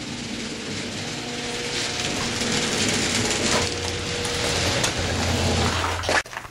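Motorized garage door running, a steady mechanical hum and rattle whose low rumble grows louder through the second half, then cuts off suddenly at the end.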